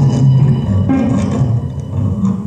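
Free-improvised music from a small ensemble of electric guitar, cello, iPad electronics and amplified palette: dense low plucked-string notes under scattered higher textures, with a new note struck about a second in.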